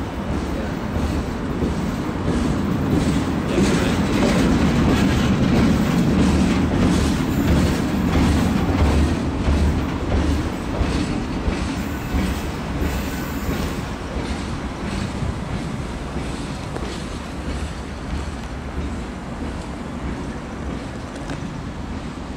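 A freight train of empty flat wagons rolling slowly past, its wheels clicking over the rail joints. A diesel locomotive rumbles under it, loudest a few seconds in and fading as the train draws away.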